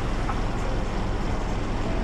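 Steady engine and road noise of a bus, heard from inside its passenger cabin.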